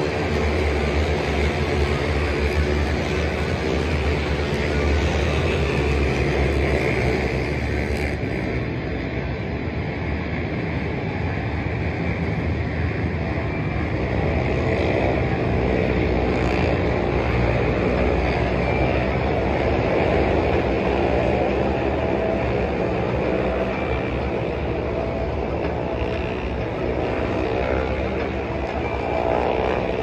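Race car engines running on the circuit: a continuous mass of engine noise that swells and eases as cars travel around the track.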